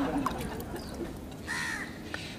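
A bird calling once, briefly, about one and a half seconds in, with a few faint high chirps around it.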